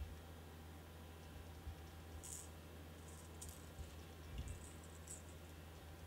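Faint, scattered clicks and rattles as a 6th Sense Snatch 70X lipless crankbait and its treble hooks are turned over in the hand, over a low steady hum.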